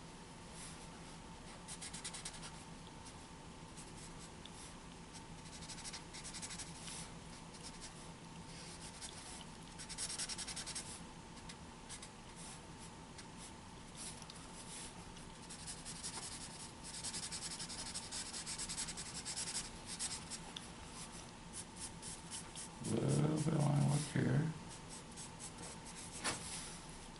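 Black felt-tip marker scratching across a large paper drawing pad in short strokes, with runs of quick back-and-forth hatching as dark shadow areas are filled in. Near the end, a brief voiced sound from a person, about a second and a half long, is the loudest thing.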